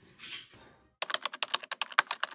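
A keyboard-typing sound effect: a rapid run of sharp clicks, about ten a second, starting about a second in. It is preceded by a brief soft swish.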